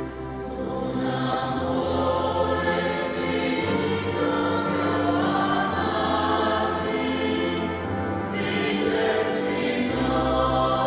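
A choir singing a slow sacred hymn in long held notes.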